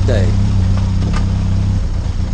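Benelli TRK 502 X's parallel-twin engine running steadily at low speed as the motorcycle is ridden along a dirt track, with a brief dip in level near the end.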